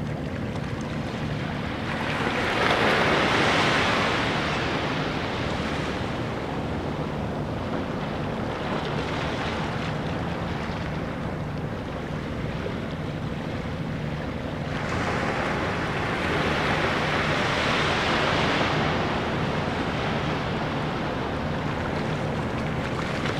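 Small waves washing onto a sandy beach in calm bay water, swelling twice, about two seconds in and again about fifteen seconds in, then receding.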